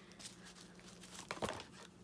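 Faint rustling and a few light clicks of a deck of oracle cards being shuffled by hand, over a low steady hum.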